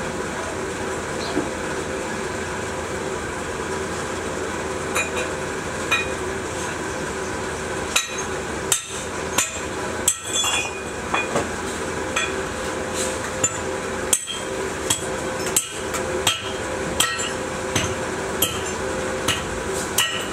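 Irregular sharp metal taps and clinks of hand work on a sand-casting mould, starting about five seconds in and coming more often from about eight seconds on, over a steady mechanical drone.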